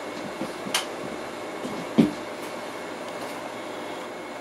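Steady background room noise with a light click a little under a second in and a louder knock about two seconds in, from clip leads and parts being handled on the workbench.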